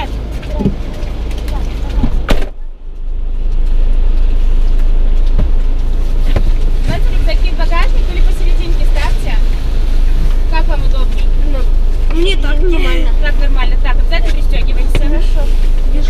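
A car door shuts with a thump about two seconds in, over a steady low rumble inside the car. Later two children settle into the back seat, with rustling and soft voices.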